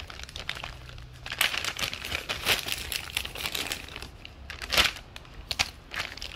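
Clear plastic bag crinkling on and off as a coiled optical cable is taken out of it, loudest near the five-second mark.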